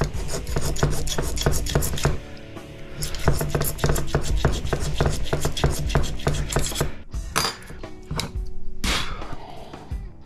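Rapid scraping strokes on the winding of a microwave oven transformer, scratching through the wire's coating to see whether it is copper or aluminum. The scraping pauses briefly about two seconds in and thins to a few strokes after about seven seconds. This winding turns out to be aluminum.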